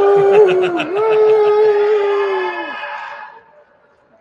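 Conference crowd calling out hello in reply: one voice holds a long drawn-out shout for about three seconds, over a scatter of other voices and claps, fading out near the end.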